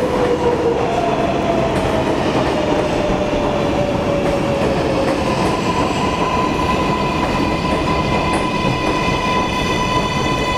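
R62A subway train on the 7 line running into an underground station and slowing: a steady rumble, with a whine that falls in pitch over the first five seconds. About halfway through, a steady high squeal with higher ringing tones above it sets in as the train slows toward a stop.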